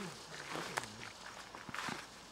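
Footsteps swishing and crunching through long grass, uneven and close, with faint voices in the background during the first second.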